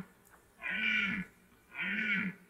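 Red deer stag roaring in the rut: a series of short roars repeated about once a second, one about halfway through and another starting near the end.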